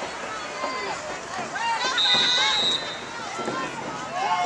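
Spectators shouting and calling out from the stands during a high school football play, with a high, steady whistle blast about two seconds in that lasts under a second.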